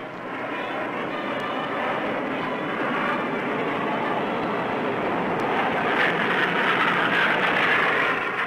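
Jet engines of a Northrop YB-49 flying wing in a low flyby, a steady rushing jet noise that builds gradually and is loudest near the end. The sound is dulled by a narrow, old film soundtrack.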